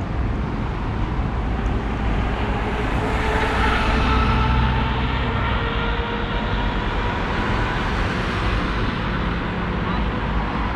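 City street traffic: cars running past at an intersection, a steady low rumble that swells as a vehicle passes about three to five seconds in.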